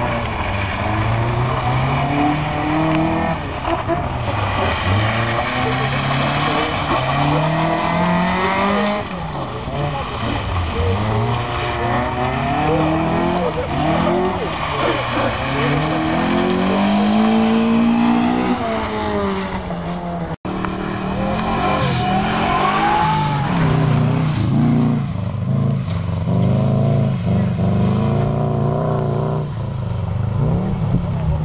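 Rally car engine revving hard, its pitch climbing and falling again and again as the car is driven flat out around a loose gravel stage. After a sudden cut about two-thirds of the way in, an engine runs lower and steadier.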